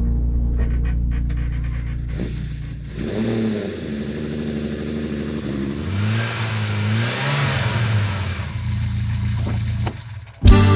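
Sports car engine running steadily, then revved several times from about three seconds in, its pitch rising and falling; the sound cuts off suddenly near the end.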